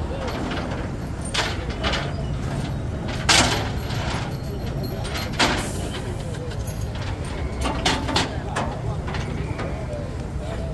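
Low steady rumble of an idling truck engine under crowd voices, broken by a few sharp metallic knocks, the loudest about three and a half seconds in and another about two seconds later.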